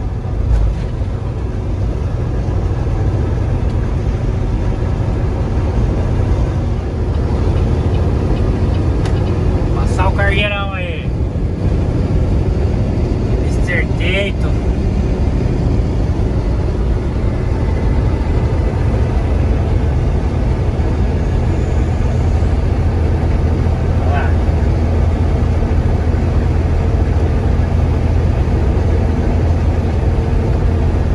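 Engine and road noise of a car-hauler semi truck heard from inside its cab at highway speed: a loud, steady low rumble. Brief voice-like sounds come through about ten and fourteen seconds in.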